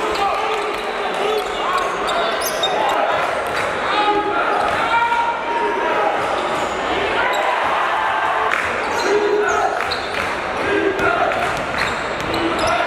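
Live basketball game sound in a large echoing gym: the ball bouncing on the hardwood floor with sharp thuds, amid players and spectators calling out.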